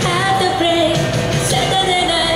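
Young woman singing a Japanese 1980s pop song live into a handheld microphone, amplified over recorded backing music, holding a note with vibrato.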